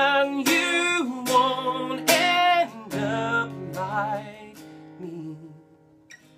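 A man sings long held notes with vibrato over a strummed acoustic guitar. Then the singing stops, and the guitar rings on alone and fades almost to silence near the end.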